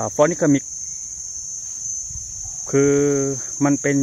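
Steady, high-pitched insect chorus, an unbroken shrill drone of the kind crickets make.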